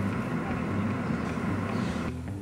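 Steady low hum of a 2008 Mercedes-Benz S550's 5.5-litre V8 idling, heard from inside the cabin.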